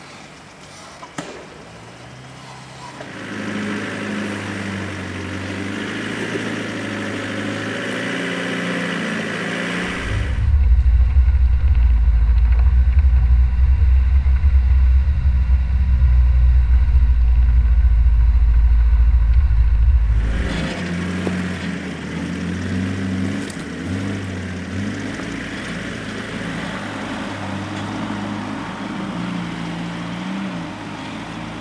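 Off-road 4x4 engines pulling at low speed up a rocky track, with a steady engine note under a layer of noise. For about ten seconds in the middle it gives way to a much louder, deep rumble with the highs gone, as picked up by a camera mounted on the vehicle as it drives over the rocks.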